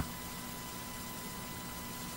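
Steady background hiss with a faint, constant electrical hum: the recording's noise floor, with no other sound.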